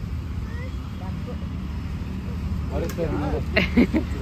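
Steady low background rumble, with a voice coming in briefly near the end.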